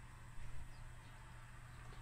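Faint room tone with a steady low hum and a brief soft sound about half a second in.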